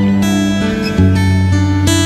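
Twelve-string acoustic guitar played alone, with ringing chords picked in an instrumental passage. New chords sound at the start, about a second in and again near the end.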